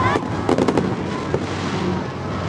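Fireworks going off: a rapid string of five or six sharp cracks in the first second, over background music.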